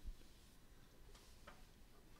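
Near silence: faint room tone with two faint ticks, about a second and a second and a half in.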